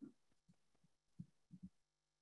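Near silence, broken by a few faint, short low thumps: one at the start, one about half a second in, one at about a second, and a quick pair near the end.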